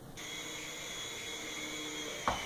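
Small electric motor of a toy remote-control helicopter running with a steady whine of several high tones, starting abruptly just after the start.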